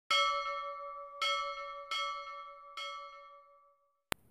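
A bell struck four times at uneven intervals, each strike ringing with clear, steady tones that slowly fade; the last ring dies away just before the end.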